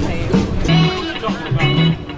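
Background music: a song with a singing voice over held bass notes.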